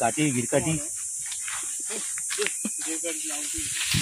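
Brief bursts of a person's voice in the first second and again near the end, over a steady high-pitched buzz of insects in the trees.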